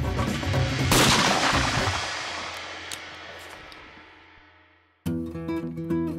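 A single shotgun shot about a second in, its echo fading away over about four seconds: the shot that kills a jackrabbit. Guitar music plays before it and starts again near the end.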